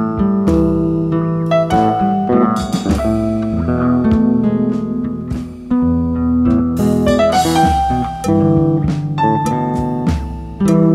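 Electric bass played along with a backing arrangement of guitar and piano, a slow melodic instrumental with sustained notes and occasional sharp strikes.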